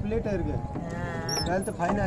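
A man's voice talking, with one drawn-out, wavering vowel about a second in.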